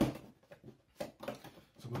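A few short knocks and rustles of a cardboard box and its foam insert being handled.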